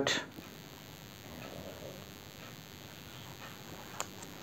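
Faint rustling and a few light ticks of folded paper as one origami cube unit's flap is slid into another unit's pocket, over a low steady hiss.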